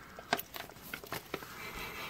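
A foil-laminate MRE food pouch handled in the hands, giving a few short, light crackles.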